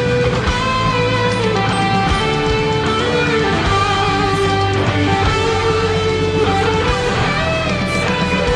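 Charvel San Dimas electric guitar, played through a Vox Tonelab ST, picking a lead melody of held notes that step and slide between pitches. It is played over a full rock backing track with drums.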